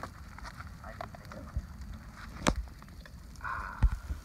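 Small wood campfire of sticks and split kindling crackling, with scattered sharp pops, the loudest about halfway through.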